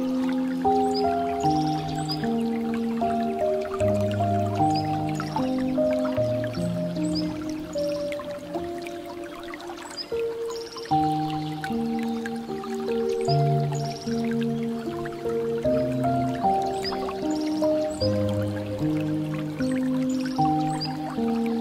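Slow, soft piano music in held chords, with water trickling and dripping from a bamboo fountain spout underneath it.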